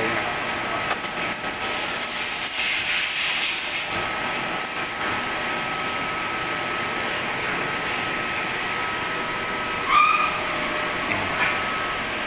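Electric arc welding hissing and crackling on a steel machine frame, strongest in the first few seconds, over a steady thin high whine. A short rising squeak comes near the end.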